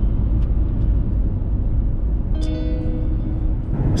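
Steady low road and engine rumble of a car cruising on a highway, heard from inside the cabin. A few sustained musical notes sound over it from about halfway through until shortly before the end.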